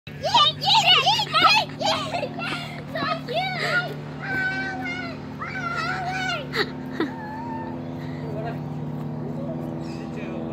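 A young child's high-pitched voice squealing and calling out in excitement without clear words, the loudest bursts in the first two seconds and the calls thinning out after about seven seconds, over a steady low hum.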